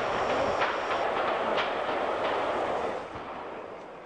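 Rushing, hissy outdoor sound from old archival field footage, with a few faint sharp cracks in the first half, fading toward the end.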